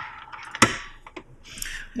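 A sharp knock from the metal test-fixture box being handled and tilted, followed by a smaller click about a second in.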